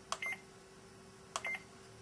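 Push buttons on a Datax3 mobile data terminal pressed twice, about a second apart: each press gives a click and a short, high beep.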